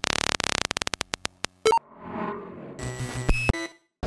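Electronic glitch sound effects for a logo sting: a rapid stutter of clicks that slows and thins out over the first second and a half, a short beep, then a swelling digital noise and buzzy glitch tones that cut off suddenly just before the end.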